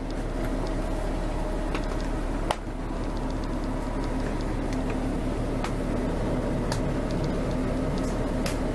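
Steady mechanical whirring of the motorhome's electric bedroom slide-out motor as the slide extends, with a few light ticks and one sharp click about two and a half seconds in.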